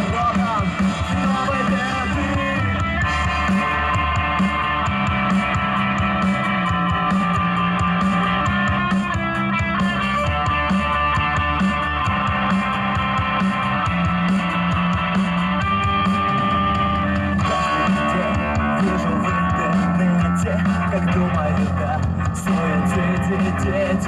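A live rock band plays through a PA system: electric guitar, bass guitar and drum kit.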